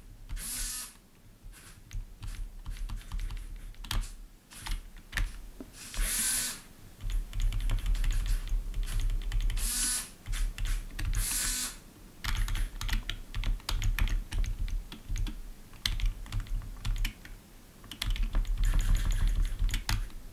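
Computer keyboard arrow keys tapped in quick runs, interrupted by about four brief whirs from the hobby servos of an antenna tracker as they swing the pointer to a new direction.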